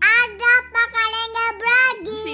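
A young girl's high voice singing a short sing-song phrase of several held, loud syllables.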